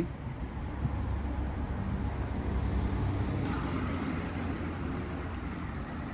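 Steady low rumble of road traffic: vehicle engines and tyres on the avenue.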